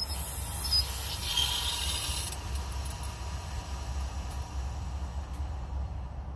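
Outdoor hose bib turned on: a hiss of water rushing through the valve into a garden hose, strongest for the first two seconds or so and then dying down to a faint hiss, over a steady low rumble.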